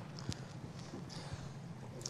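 Quiet room tone with a few faint, soft knocks.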